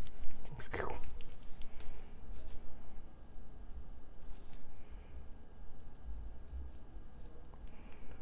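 Quiet handling sounds of nitrile-gloved hands working anti-seize onto the threads of a brass hotend nozzle with a small brass wire brush: soft scratching and light clicks.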